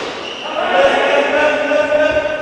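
Cricket players' voices shouting together, a held, wordless yell that swells louder about half a second in.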